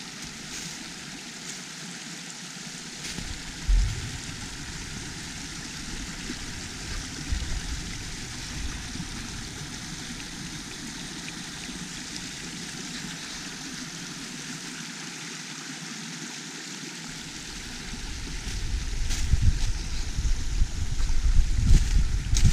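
Small rocky woodland brook running over stones: a steady rush of water. A single low thump comes about four seconds in, and near the end a low, uneven rumble on the microphone grows louder over the water.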